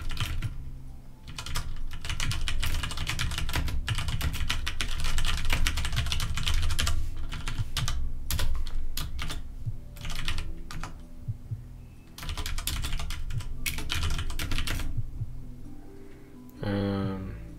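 Fast typing on a computer keyboard, in three long runs of keystrokes with short pauses between them.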